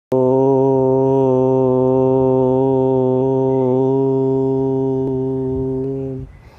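A single long chanted note in a low man's voice, held at one steady pitch for about six seconds and easing off at the end, as a chanted mantra.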